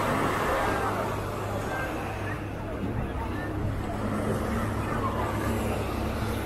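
Steady low motorboat engine hum, with the chatter of voices of people nearby.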